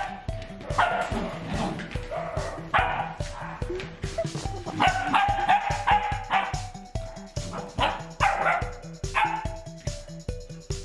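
Puppies yipping and barking in repeated short bursts while they play-wrestle, over background music with a steady beat.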